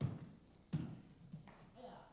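Feet thudding onto martial-arts floor mats in a tumbling pass: one thud at the start and a sharper one about three-quarters of a second later, then a lighter knock. A faint, short kiai shout comes near the end.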